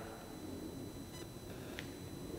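Room tone in a pause between spoken phrases, with a faint steady high-pitched electronic whine and a couple of faint ticks.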